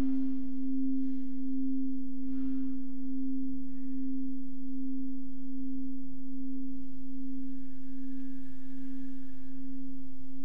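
A singing bowl sustaining one steady, even tone, with a fainter pulsing overtone above it that fades out about two seconds in.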